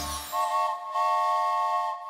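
Cartoon steam-train whistle: a chord of several steady tones, a couple of short toots followed by one long blast of about a second.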